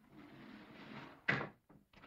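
Secret stone door in a cave wall sliding open with a steady rush for just over a second, then stopping with a loud thump, followed by a few small knocks.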